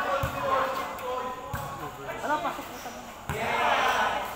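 A volleyball being played on a concrete court: three sharp thuds about a second and a half apart, with players' shouts and chatter around them.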